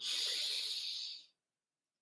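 A woman taking one deep breath in, a steady hiss lasting just over a second that stops sharply.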